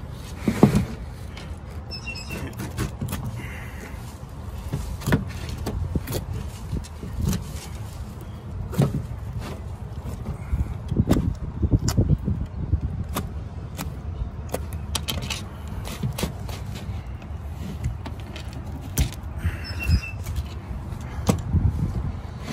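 Scattered knocks, clicks and handling noises as an iguana carcass is moved and cut on a ribbed plastic truck-bed liner, over a steady low rumble.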